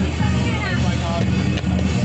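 Loud steady music with voices, and a car passing close by on the street.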